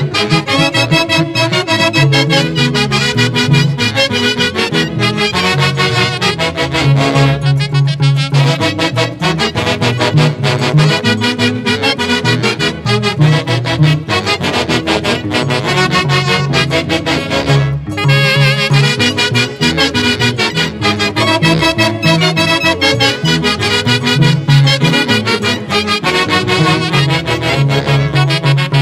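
Instrumental huaylarsh from an Andean folk orchestra, its melody carried by a section of saxophones playing together over a steady pulsing bass beat.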